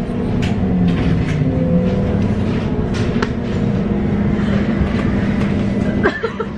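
Inside a moving city bus: a steady low hum from the drivetrain, its pitch dipping and rising about one to two seconds in, with scattered clicks and rattles of the cabin.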